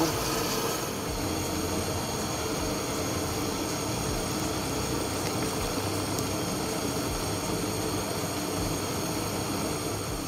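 Large enamel pot of cherry syrup at a rolling boil, giving a steady, even noise.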